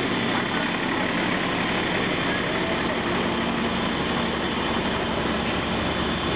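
A fire engine's engine running steadily at low revs as the truck rolls slowly past close by.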